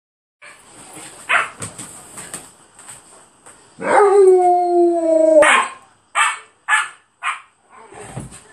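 Alaskan malamutes at play: scuffling and a few short yips, then a long, loud, held howl-like woo of about a second and a half, falling slightly in pitch, followed by three short breathy barks.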